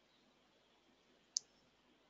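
Near silence with a single short, sharp click about a second and a half in.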